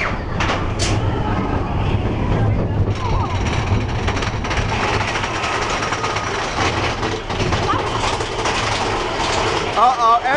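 Big Thunder Mountain Railroad's mine-train coaster cars rolling along the track toward the lift hill: a steady low rumble of wheels and running gear, heard from a seat on board.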